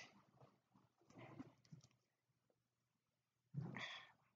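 Near silence, broken by a faint, short vocal sound about a second in and a voice starting just before the end.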